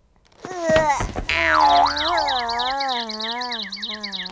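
Cartoon sound effect: a springy boing whose pitch wobbles up and down, with a fast high twittering above it, the classic effect for a character dazed and seeing stars after a crash.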